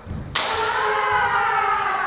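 Kendo exchange: low thuds of feet on the wooden floor, then a sharp crack of a bamboo shinai striking the opponent's armour about a third of a second in. A long, loud kiai shout follows, held past the end and slowly falling in pitch, for a strike the referees score.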